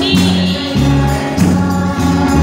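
Group singing of a gospel song over loud amplified accompaniment, with a bass line moving in held notes about every half second.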